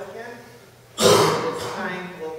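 A person clears their throat with one loud, harsh burst about a second in.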